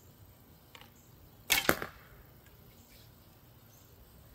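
A traditional bow shot with a thumb draw: the string leaves a wooden thumb ring and snaps forward about a second and a half in, two sharp strokes in quick succession.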